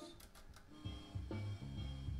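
Music with drums and bass playing from a tape in a Panasonic CQ-473 MKII car cassette player. It drops out briefly with a few clicks as the deck switches to reverse play, then comes back a little under a second in.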